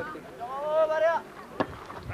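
A single voice shouting one long call that rises and then falls, over the background of an outdoor sports crowd. A single sharp smack comes about a second and a half in.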